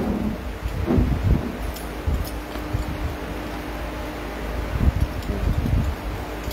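Low rumble and rustling from a handheld phone microphone being moved about and brushed, over a steady hum.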